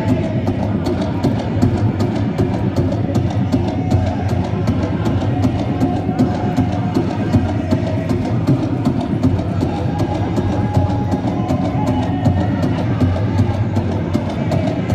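Powwow drum group playing a song: a big drum struck in a steady, even beat under a group of singers' high-pitched voices.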